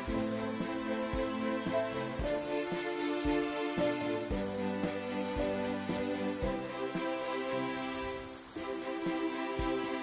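Background music: sustained instrumental chords with a soft low pulse, the chord changing once near the end.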